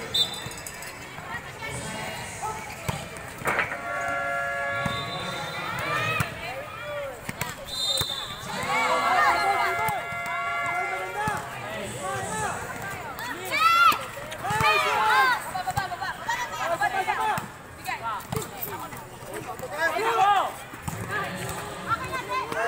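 A volleyball rally: the ball is struck sharply several times, loudest about fourteen seconds in, amid players' shouts and calls.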